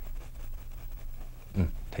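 Oil-paint brush working on canvas, soft and faint, over a steady low hum. A man's low murmured "mm" about one and a half seconds in is the loudest sound.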